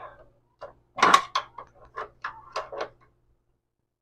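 A small steel pry bar clinking and tapping against a steering shaft U-joint and the metal around it as it is worked in to free the joint: a string of light metal knocks, the loudest about a second in, dying away before the end.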